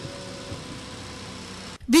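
Low, steady street background noise with faint indistinct voices. It cuts off abruptly near the end, and a woman's voice-over narration begins.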